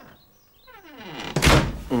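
Cartoon sound effect of a wooden door swinging shut, with a falling creak, then closing with a loud thud about one and a half seconds in.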